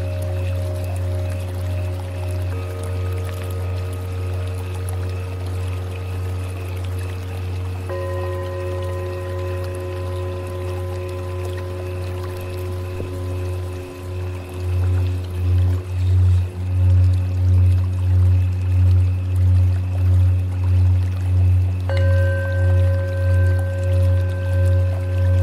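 Tibetan singing bowls ringing in long, layered sustained tones over a deep hum. A new bowl sounds about two and a half seconds in, another about eight seconds in, and a higher one near the end. From about halfway the deep hum swells and fades in a slow wavering beat, about once a second.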